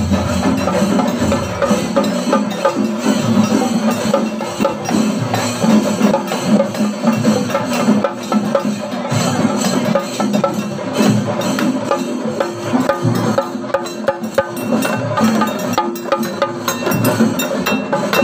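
A drum ensemble in a street procession plays a dense, fast, continuous rhythm of many drum strokes, with a sharp clattering edge to the strikes.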